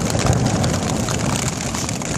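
Steady rain pattering on a tarp shelter during a thunderstorm, with a low steady rumble underneath.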